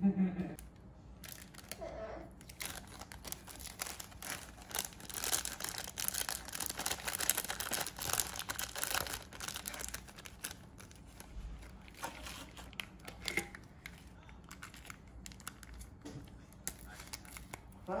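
Plastic seasoning sachets from an instant cup ramen crinkling and tearing as they are handled and opened. The crackling is dense for the first ten seconds or so, loudest in the middle, then gives way to quieter handling with a few light clicks.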